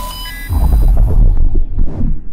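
Cinematic logo-intro sting: loud, deep pulsing bass with a few short bright tones at the start, the treble dying away through the second half.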